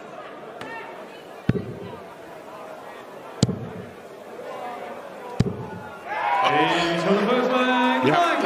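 Three steel-tip darts thudding into a bristle dartboard one after another, about two seconds apart, each a sharp single hit. Voices rise in the last two seconds.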